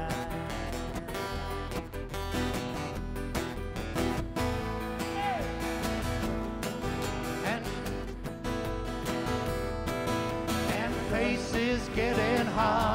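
Live country band playing an instrumental break between verses: strummed acoustic guitars over upright bass. Singing comes back in near the end.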